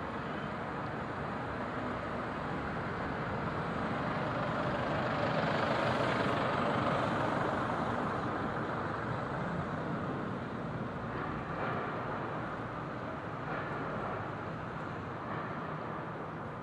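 City street traffic, with a large vehicle passing: the noise swells to its loudest about six seconds in, then fades back to the steady traffic.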